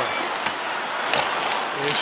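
Hockey arena crowd noise, steady, with a few sharp clicks of sticks striking the puck on the ice as it is passed to the point and shot.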